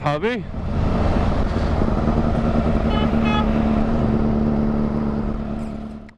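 Sport motorcycle's engine running steadily at low revs while riding slowly in traffic, under a wash of wind and road noise. A horn gives two short beeps about three seconds in.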